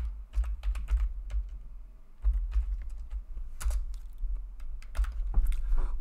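Typing on a computer keyboard: irregular keystroke clicks, with a low rumble underneath.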